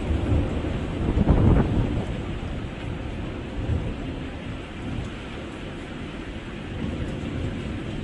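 A low, noisy rumble with a hiss over it, swelling about a second in and then slowly dying away.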